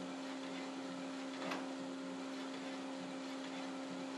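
Epson CW-C6520A colour inkjet label printer running as it prints in its slow high-quality 1200x1200 dpi mode. It gives a steady hum with a single short click about a second and a half in.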